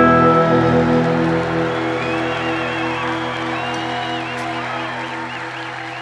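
Final chord of a live rock band, electric guitars ringing out and slowly fading. Crowd whistles and cheers come in over it from about two seconds in.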